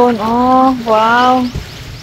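A person's voice holding two long drawn-out notes, the second slightly falling at its end, as in sung or stretched-out speech.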